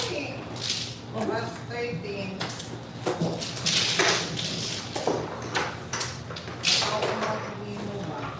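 Mahjong tiles being shuffled by hand on the table between hands, the plastic tiles clattering and clacking against each other in repeated surges, loudest about four seconds in and again near seven seconds.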